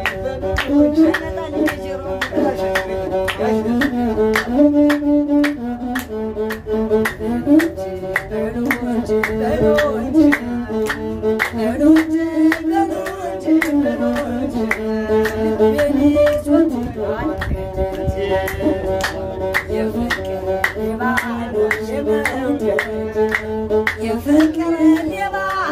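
Masinqo, the Ethiopian one-string bowed fiddle, playing a stepping azmari melody, over a steady beat of hand-claps about two to three a second, with a woman singing.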